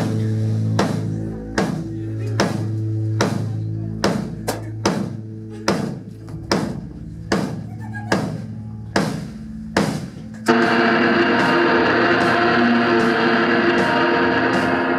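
Live dark-punk noise band playing: the drum kit strikes a slow, steady beat about every 0.8 s over a held bass guitar note, then about ten seconds in a loud, dense wall of guitar noise comes in suddenly, with the beat carrying on underneath.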